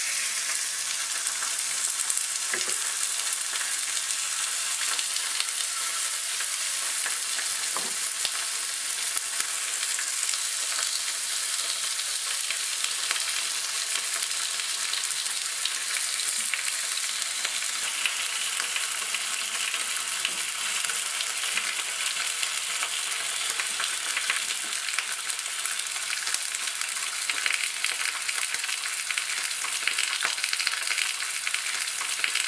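Raw pork loin slices sizzling loudly and steadily in hot oil in a de Buyer iron frying pan as they are laid in with chopsticks, four slices in all, with an occasional faint knock.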